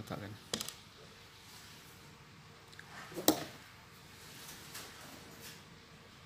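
Light clicks of metal needle-nose pliers and a small electrolytic capacitor being handled over a TV power-supply board: a quick cluster of small clicks about half a second in and one sharp click about three seconds in.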